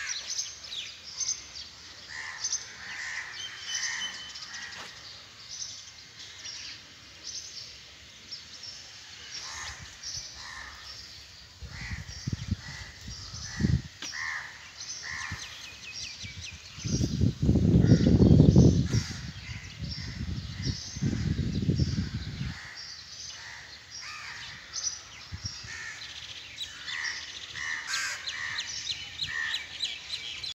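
Birds calling over and over in short, repeated calls. A loud low rumble from about 17 to 22 seconds in, with briefer ones around 12 and 14 seconds, is the loudest sound.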